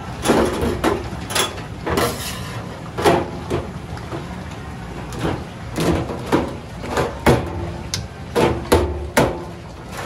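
A boiled lobster is handled and cut with a knife on a stainless-steel sink drainboard. There are about a dozen irregular knocks and clatters of shell and knife against the steel, over a steady low hum.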